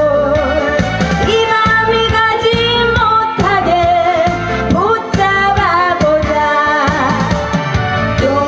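A woman singing a Korean trot song live into a handheld microphone, over amplified instrumental accompaniment with a steady beat.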